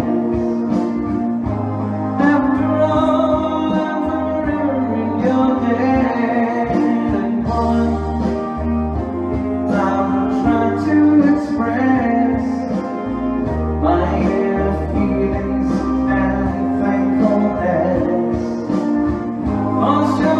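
A man singing a pop song into a handheld microphone over a backing track; the music runs on without a break.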